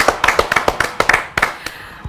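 A small group of people clapping their hands, with irregular overlapping claps that thin out and fade near the end.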